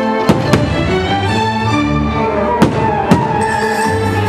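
Aerial firework shells bursting: four sharp bangs, a pair close together just after the start and another pair about half a second apart near the end. They sound over loud show music with sustained notes.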